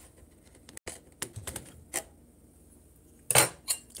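Cutlery clinking and scraping against a metal baking pan: a few light taps, then a louder clatter about three seconds in.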